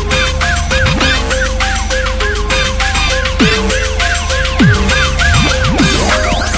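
Hard tekno from a DJ mix: a fast, dense kick-and-bass beat under a repeating riff of short rising-and-falling high tones, about four a second, with a few deep downward-sliding notes.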